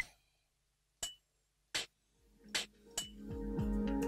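Korg Volca Beats analogue drum machine playing single percussion hits one at a time, triggered from Ableton drum-rack pads as each mapped sound is tested: about five short, sharp, bright hits spaced roughly a second apart. A steady low tone comes in near the end.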